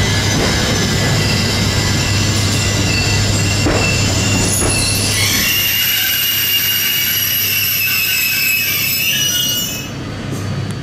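Omneo Premium double-deck electric train moving along the platform, with a steady hum and rushing noise; from about halfway, high-pitched whining tones rise and hold until near the end.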